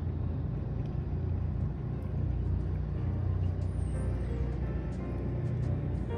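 Steady low underwater rumble picked up by a camera held under the water. Faint background music comes in about halfway through.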